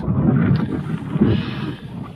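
Loud rumbling and rustling noise close on the microphone, with no clear tone, a hiss coming in about a second in; it cuts off sharply at the end.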